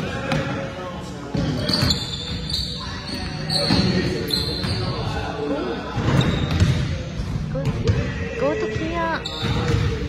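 Basketball dribbled and bouncing on a hardwood gym floor, with sneakers squeaking in short high chirps during play. Players' voices echo through the large hall.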